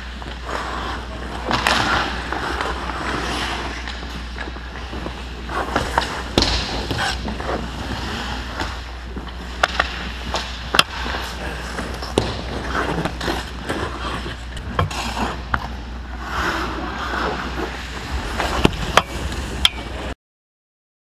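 Ice hockey skates scraping and carving on ice, with scattered sharp clacks of sticks and puck hits, over a steady low hum.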